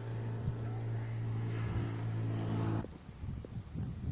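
A motor running with a steady, even hum that cuts off suddenly just before three seconds in, followed by a few soft low knocks.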